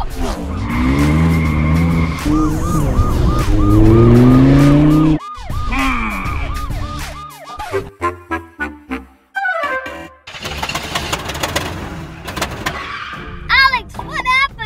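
Car engine revving with a rising pitch, cutting off abruptly about five seconds in, then running in broken, stop-start sputters and a falling sound effect as the car runs out of fuel, under background music.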